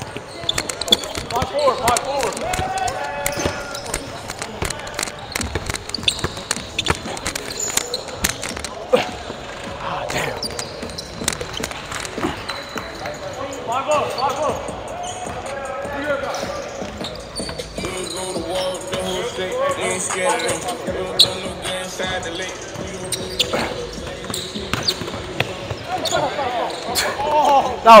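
A basketball bouncing on a hardwood gym floor, with repeated short thuds through the play, over players' voices in the background.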